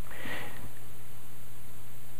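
A man's short, sharp breath in through the nose, heard close on the microphone in the first half-second of a pause in speech. A steady low electrical hum runs underneath.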